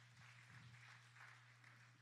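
Near silence: room tone with a steady low hum and a faint soft hiss.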